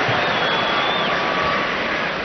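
Steady background noise of a football stadium crowd, an even wash of sound from the stands with no distinct calls.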